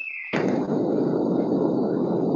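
Steady rushing background noise over a video-call audio line, opening with a short falling tone.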